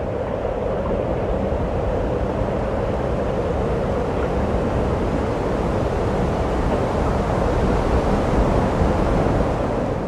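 Steady wind noise, an even low rushing rumble with no pitch or rhythm.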